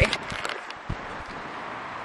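Steady outdoor background noise in an open parking lot: an even hiss, with a brief low thump just before a second in.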